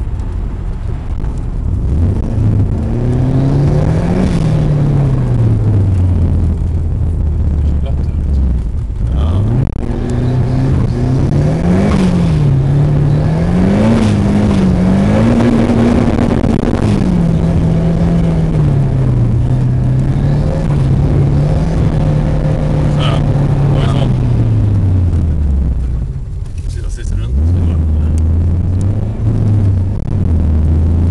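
Car engine heard from inside the cabin, its pitch climbing and falling again and again as the car speeds up and eases off, with a steadier stretch in the middle. Near the end it drops back to a low idle.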